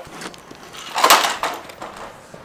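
A kick scooter clattering onto asphalt as its rider falls, a short noisy crash about a second in.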